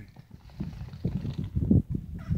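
Wind buffeting the camera microphone outdoors, a low, uneven rumble with soft bumps that grows louder near the end.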